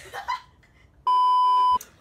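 A single flat, high electronic beep lasting under a second, about halfway through, starting and stopping abruptly: a censor bleep edited over a spoken word.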